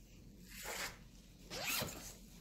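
A zipper pulled twice: a short stroke about half a second in, then a louder, quicker one near the end.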